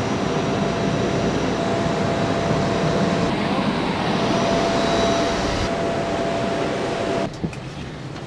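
Airliner's jet turbine running on the ramp: a steady roar with a faint high whine. It cuts off suddenly about seven seconds in.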